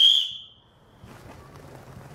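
One short, loud blast on a survival whistle without a pea: a single steady high note that tails off within about a second.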